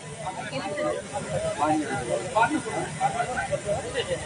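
Indistinct voices and crowd chatter over a steady hiss, with no clear speech into the microphone.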